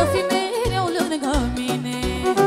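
A female singer performing a Romanian folk party song live through a microphone, her melody wavering with ornaments and vibrato, over band backing with a steady bass beat.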